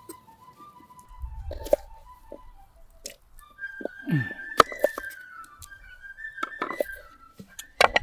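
Solo fife playing a simple melody as background music, moving to higher notes about halfway through. A few sharp clicks of a knife on a wooden cutting board sound under it.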